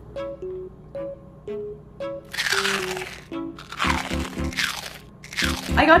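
Close, loud crunching of chewed food in three bursts, over soft background music with gentle plucked notes.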